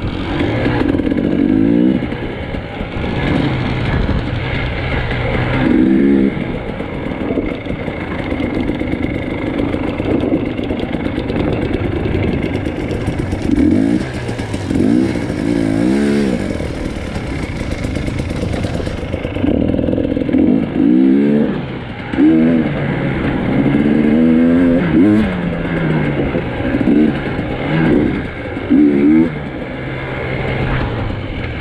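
Dirt bike engine heard close up from on the bike, revving up and down over and over as it is ridden over rough off-road ground, its pitch rising and falling with each opening of the throttle.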